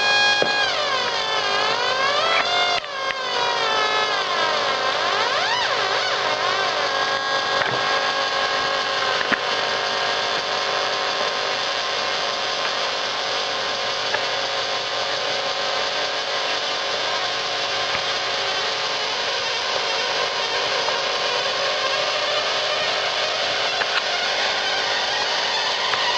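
A modified Atari Punk Console, a DIY square-wave noise synth, giving a harsh electronic buzz rich in overtones. In the first ten seconds or so the pitch swoops up and down several times as its knobs are turned, then it settles into a steadier dense drone.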